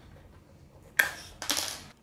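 A sharp plastic click about halfway through as a toy wheel is pushed home onto its axle, followed by a brief rustle.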